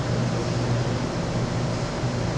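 Steady classroom background noise: a low, even hum under a constant hiss, with no distinct events.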